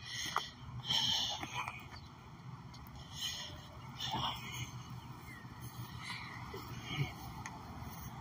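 A man breathing hard close to a phone microphone, several noisy breaths a couple of seconds apart over faint outdoor background noise; he is short of breath enough to need an inhaler.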